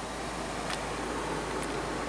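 Steady, even hiss inside the cabin of a parked 2011 Mini Cooper with its power on, with one faint click about a third of the way in.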